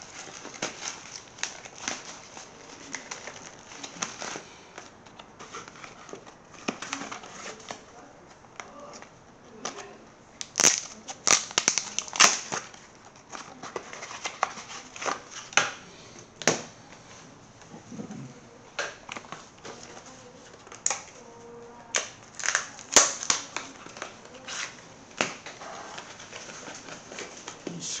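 A Yu-Gi-Oh structure deck's cardboard box and wrapping being torn open and handled, with irregular crinkling, crackling and sharp taps, busiest and loudest about ten to thirteen seconds in and again a little past twenty seconds.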